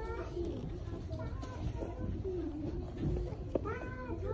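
Voices talking, their pitch rising and falling, with no single clear word.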